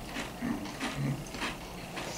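Pringles crisps being chewed: a few short, crisp crunches spread through the moment.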